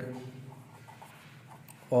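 Pen writing on paper over a clipboard, a faint, irregular scratching between words.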